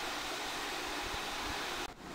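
Steady hiss of background noise, with a brief sharp dropout near the end.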